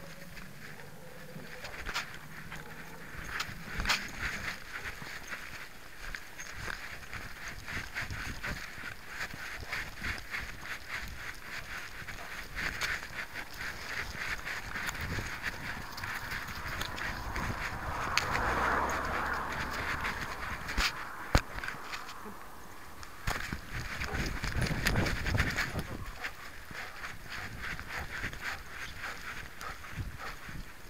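Camera worn on a walking dog's collar: a continual run of scuffing and clicking as the camera jostles with the dog's steps and movement, louder in two swells partway through.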